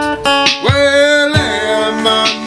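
Steel-string acoustic guitar strummed in chords, with a man's voice sliding up into a held wordless note a little after half a second in and letting it go at about a second and a half.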